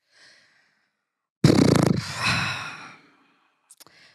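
A woman's long, heavy sigh blown into a close-up microphone. It comes in suddenly about a second and a half in and trails off over the next second and a half, with a faint breath before it.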